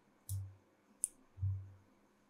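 Two faint computer mouse clicks about three quarters of a second apart, with soft low thumps.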